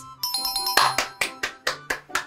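A bright chime jingle sounds as a correct-answer cue. It is followed by a run of quick, evenly spaced percussive hits, over soft background guitar music.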